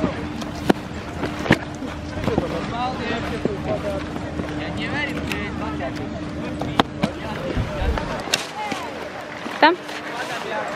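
Ski-slope bustle: distant voices of other skiers over a steady hum, with a few sharp clacks as skis and poles knock on the snow.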